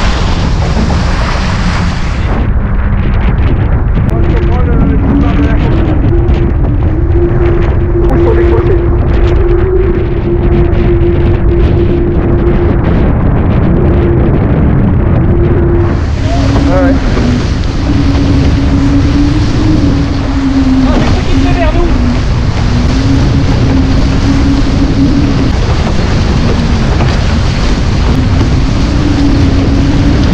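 Wind buffeting the microphone and water rushing past the hull of a Diam 24 trimaran sailing fast, with a steady hum underneath that steps up and down in pitch. The sound is dulled for a stretch in the middle.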